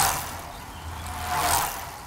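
End-screen sound effect as the channel logo shows: a steady low hum with two swelling whooshes about a second and a half apart, fading out near the end.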